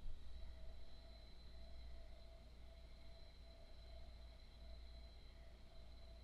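Quiet room tone: a faint steady low hum and hiss, with a faint high steady tone, and no distinct events.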